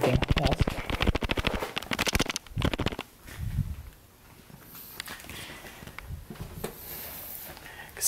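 A handheld camera being shaken, with something loose inside rattling against its case in quick clicks for about three seconds before it stops.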